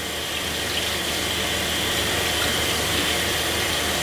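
Tap water running steadily from a sink faucet and splashing over a hand held under the stream as it is rinsed.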